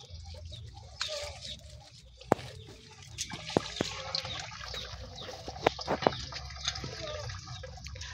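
Water dripping at a fish pond: scattered single drips, a few of them sharper and louder, over a low steady background.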